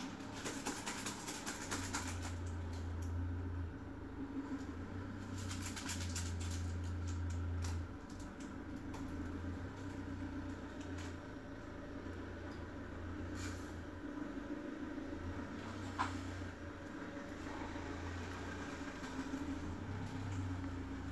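Small clicks and scratches of a pry tool working on the parts of an iPhone 5s screen assembly, in clusters in the first few seconds and again around five to seven seconds in, with one sharper click about sixteen seconds in. A steady low hum lies underneath.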